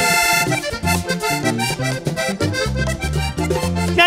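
Live vallenato band playing an instrumental interlude led by the accordion: it opens on a held chord, then runs quick melodic lines over a walking bass line.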